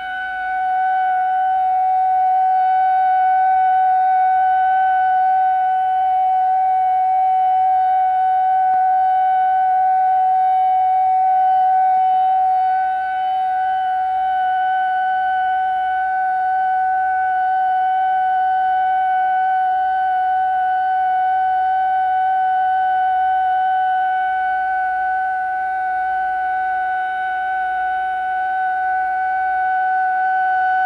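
A single loud tone held steady at one pitch throughout, with fainter overtones above it and a faint low rumble beneath.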